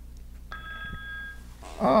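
Telephone ringing once for an incoming call: an electronic ring of a few steady high tones, starting about half a second in and lasting about a second.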